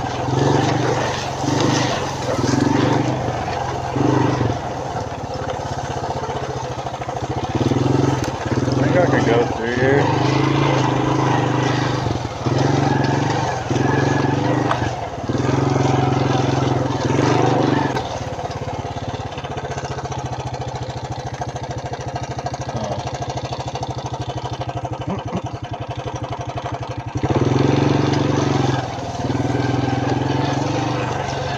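Suzuki Quad Runner LT160 ATV's small single-cylinder four-stroke engine revving up and down in short bursts as it is ridden. About two-thirds in it drops to a steady idle for several seconds, an idle the rider judges might need turning up a touch, then revs again near the end.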